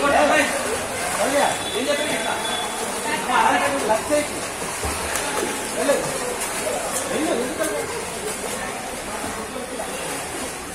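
Children's voices and calls in an indoor swimming pool, over water splashing from kicking swimmers.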